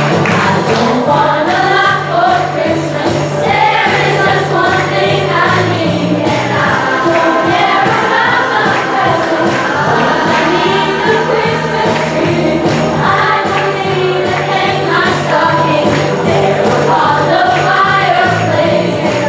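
A group of children singing a song together in unison, over an accompaniment with a steady pulsing bass line.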